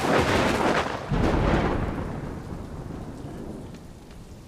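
A thunderclap breaks suddenly, and a deep rumble swells again about a second in before slowly dying away.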